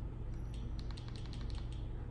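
A quick run of about a dozen faint, light clicks as a Fire TV settings menu is scrolled with the remote, over a low steady hum.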